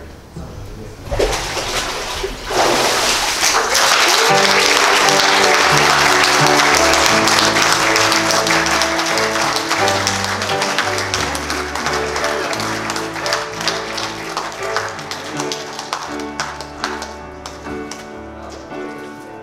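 A congregation applauding, breaking out a couple of seconds in. Music with a moving bass line and held chords joins about four seconds in and carries on as the clapping slowly fades.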